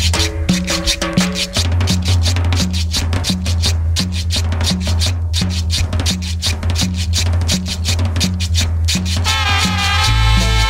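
Cumbia music with a fast, even percussion groove of scraped güiro and shakers over a steady bass line. A horn section comes in near the end.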